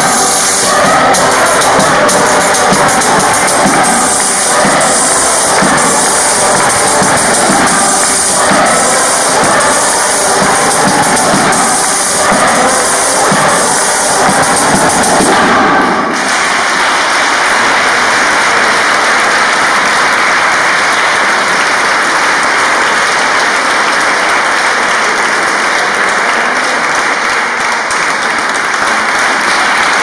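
Mixed choir singing with a frame drum (tamburello) beating time; the music ends suddenly about halfway through. It is followed by sustained audience applause.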